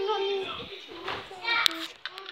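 A young girl's high-pitched voice, drawn-out calls and vocal sounds with no clear words, ending with a sharp click.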